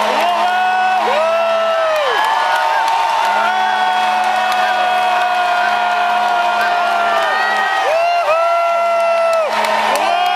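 Plastic stadium horns (vuvuzelas) blown in long overlapping blasts, each held for one to a few seconds and dropping off at the end, over a crowd cheering and whooping.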